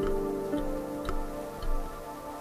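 Slow ambient music on Hokema kalimba and Moroccan sintir lute. Plucked notes start about every half second and ring on, with a low bass note swelling near the end.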